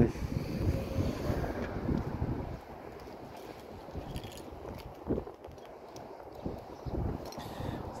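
Wind buffeting the microphone as an uneven low rumble, louder for the first two and a half seconds and then lighter.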